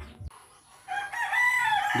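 A rooster crowing: one long call starting about a second in and running on to the end.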